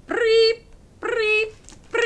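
A woman's voice giving three short, high-pitched held tones, evenly spaced and about half a second each, each sliding up into the note: the reader voicing the museum's visitor alarm ringing in the story.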